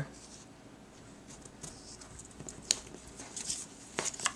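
Faint handling sounds of paper craft pieces and ribbon on a cutting mat: light rustles and small ticks, with one sharper click a little past halfway.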